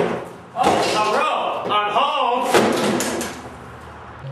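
A door bangs open with one sharp impact, followed by about three seconds of a man's voice that fades out.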